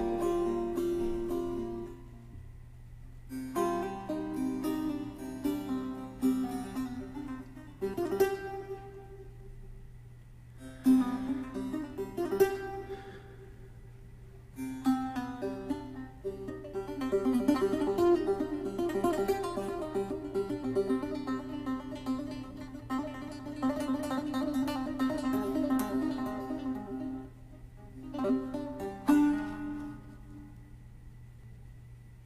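Long-necked Persian lute played solo in Persian classical style: plucked melodic phrases separated by brief pauses, turning into a busier run of rapid plucking and strumming in the middle of the stretch before it stops and starts again near the end.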